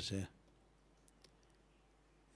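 A man's voice ends a word, then a pause of near silence with two faint clicks a little past a second in.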